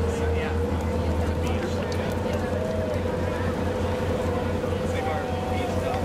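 A motorboat engine running steadily, a low drone with a constant hum above it, under the chatter of people's voices.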